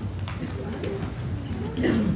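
A congregation sitting down: shuffling and rustling, with faint low murmurs.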